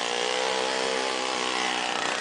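Small engine of a motorized monowheel running steadily at a constant speed, its pitch easing slightly near the end.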